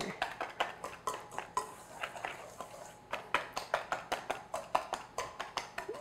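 Wire whisk stirring dry flour and sugar in a stainless steel mixing bowl, its wires clicking and scraping against the metal in a quick, uneven series of ticks.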